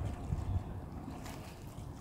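Low, gusty wind rumble on the microphone, strongest in the first half second and easing off, with faint splashing from a large dog swimming and wading out of a pond.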